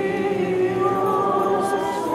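Many voices singing an Orthodox hymn together a cappella, in long held notes.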